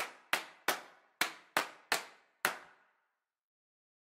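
Seven sharp percussive hits in an uneven rhythm over about two and a half seconds, each ringing out briefly: an outro sting.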